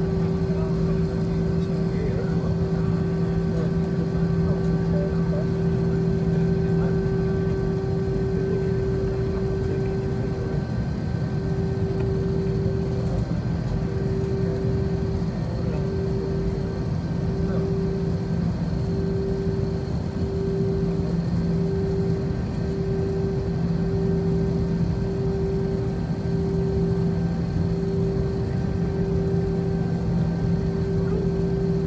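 Jet airliner cabin noise while taxiing: a steady engine hum and rumble at a constant level, with a droning tone that, about a third of the way in, starts pulsing on and off roughly once a second.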